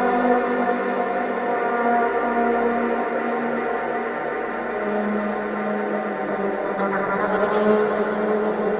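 Slow, dark electric violin music of long held notes over a low sustained tone, easing a little in the middle and swelling again near the end.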